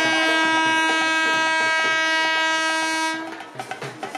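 Indian Railways electric locomotive sounding one long, steady horn blast as the train comes into the station. The blast cuts off about three-quarters of the way through, leaving faint rhythmic wheel clicks.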